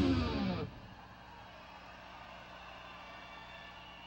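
The last chord of a distorted electric rock guitar sliding down in pitch and cutting off within the first second, followed by a faint, steady hum from the amplifiers.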